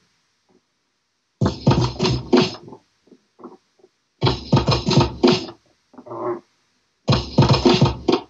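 Beat juggling on two turntables: a short drum break from the records plays in three bursts of about a second and a half, roughly three seconds apart, each a handful of hard drum hits. Between the bursts the sound cuts to near silence while the records are held, with a few faint short sounds of the records being moved back.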